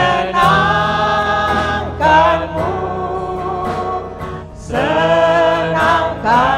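An elderly congregation singing a slow Indonesian worship song together, holding long notes with short breaths between phrases, over a low steady accompaniment.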